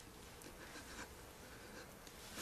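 Faint, scattered clicks of a flip phone's keys being pressed, in a quiet room.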